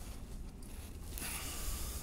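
Faint rustling heard as a soft hiss that swells about a second in, over a low steady room hum.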